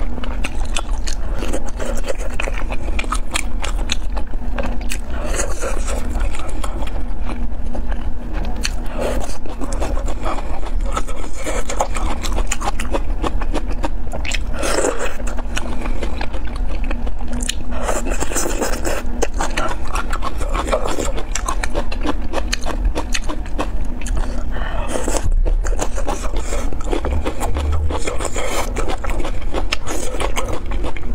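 Close-miked eating sounds: wet, clicking chewing of spicy hot-pot food such as lotus-root slices, with chopsticks scraping and rubbing in the plastic tray, over a steady low hum.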